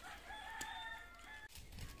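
A rooster crowing once: a single drawn-out call lasting just over a second.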